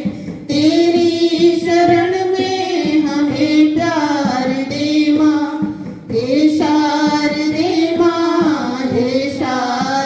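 Women singing a bhajan to the goddess Saraswati into handheld microphones, a slow melody with long held notes, pausing briefly for breath near the start and again about six seconds in.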